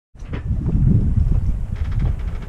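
Wind buffeting the microphone: a loud, low rumble that cuts in suddenly just after the start.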